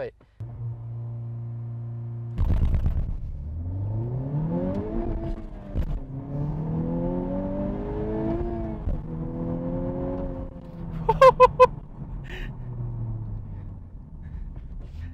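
Honda Civic Type R's 2.0-litre turbocharged four-cylinder, heard from the cabin during a standing launch: revs held steady, then a sudden launch about two seconds in, revs climbing through first gear, a drop at the shift near six seconds in, climbing again through second, then a flatter pull in third. A few short loud bursts come around eleven seconds in, and the engine note falls away near the end as the car eases off.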